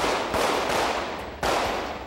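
Three pistol shots, the first two close together near the start and the third about a second later, each ringing out with a long echo off the walls of an indoor firing range.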